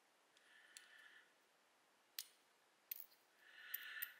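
Brass rim lock cylinder being taken apart: faint scraping as the plug slides out of the housing, and three sharp little metallic clicks. The clicks are typical of pins and springs springing loose, as one pin escapes and the rest jump out.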